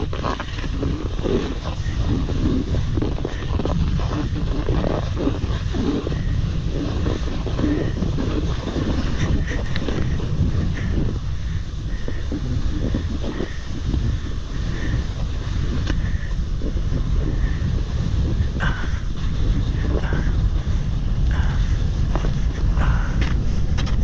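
Wind rumbling on the microphone, with the snowboard scraping and hissing over snow as it slides downhill, steady throughout.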